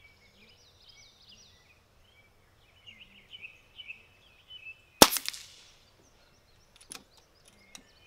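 A single shot from a Brocock Atomic XR .22 pre-charged pneumatic air pistol, a sharp crack about five seconds in with a short ring-off. A fainter click follows about two seconds later.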